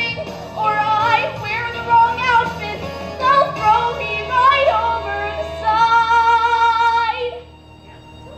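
A solo female voice sings a slow musical-theatre ballad into a microphone over soft accompaniment, ending on a long held note that stops about a second before the end.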